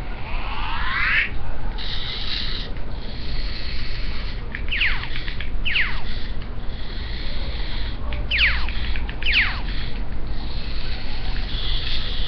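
Small remote-control spider robot toy's motors running in short bursts: a high whine with several quick chirps that fall in pitch.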